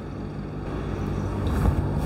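Low background rumble with a steady hum, slowly growing louder, with a few heavier low thumps near the end.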